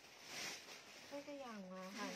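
Rustling of clothing being handled for about the first second, followed by a woman speaking.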